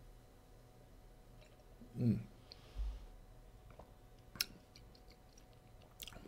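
Faint mouth sounds of a person tasting red wine: small clicks and lip smacks as he works the wine over his tongue. A short closed-mouth 'hmm' comes about two seconds in, and one sharp click a little past the middle.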